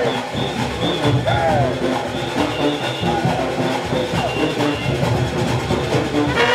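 Junkanoo street band playing: brass horns over driving drums and percussion, loud and continuous.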